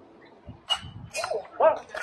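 Bat striking a pitched baseball about two-thirds of a second in, a sharp crack with a brief metallic ring, followed by short shouts.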